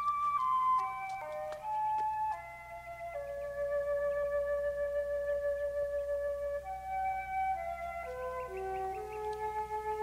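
Orchestral film score: a woodwind melody in several parts, short stepping notes that settle into longer held ones, over a steady low hum.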